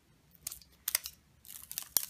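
Handling noise of a phone in a slim PU leather flip case with a plastic shell: a few short clicks and rustles as the case and its cover are handled, with a cluster near the end.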